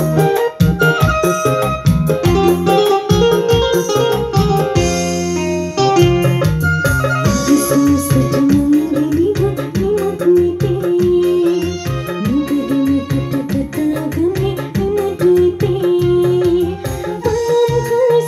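Electronic arranger keyboard played live, a piano-like melody over a steady rhythmic backing. A woman sings a song into a microphone over it from around the middle onward.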